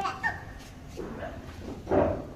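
Short, high-pitched calls from young children, with one louder shout near the end.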